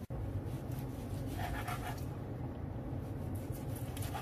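Chef's knife slicing through morcilla (black pudding) on a plastic cutting board, with faint scraping and soft cuts over a steady low hum.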